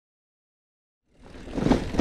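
Silence for about a second, then the rumble and rushing noise of a loaded mountain bike rolling along a dirt singletrack, rising in level.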